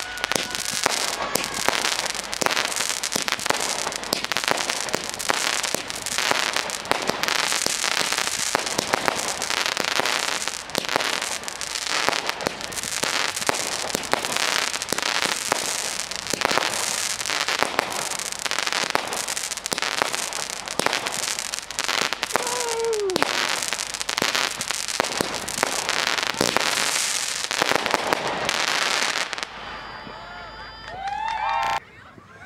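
Consumer aerial fireworks firing a dense, continuous barrage of launches, bangs and crackling bursts that stops abruptly near the end.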